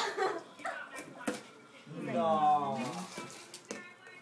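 Styrofoam packing peanuts rustling as hands dig through them in a cardboard box, with a few sharp clicks. About two seconds in, a drawn-out voice, falling in pitch, rises over it.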